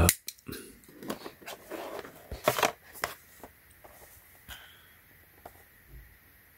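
A folding utility knife cutting open a small paperboard box. A string of short scrapes and clicks, the loudest about two and a half seconds in, growing sparse toward the end as the box is handled.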